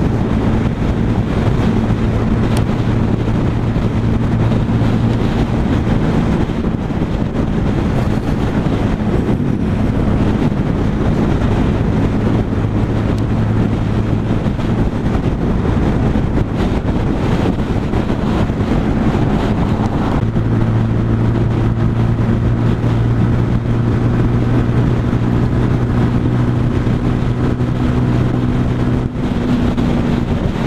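Sinnis Outlaw 125cc motorcycle engine running steadily while cruising, heard from the rider's seat with wind and road noise rushing past. The engine note shifts a few times, most clearly about twenty seconds in.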